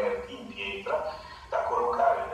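Indistinct man's voice speaking over a video call, played into the hall through loudspeakers, in short phrases with brief gaps.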